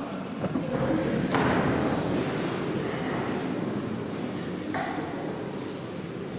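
Shuffling and rustling movement echoing in a large church, with a sharp thud about a second and a half in and another near five seconds.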